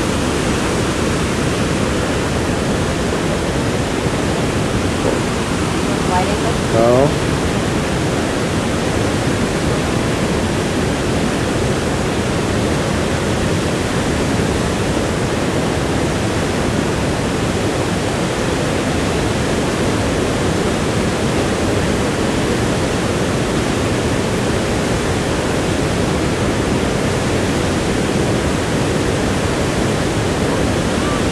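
Steady roar of Niagara Falls: an even, unbroken rushing of falling water.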